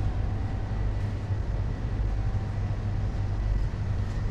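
Steady low rumble of supermarket background noise, with a faint steady hum above it.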